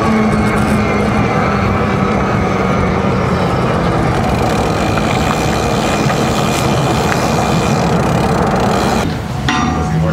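Steady rush of wind and road noise on a bike-mounted microphone while an e-bike rides along a paved path. It cuts off abruptly about nine seconds in.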